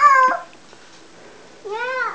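A toddler's high-pitched vocal calls: a short one at the start and a longer one that rises and falls in pitch near the end.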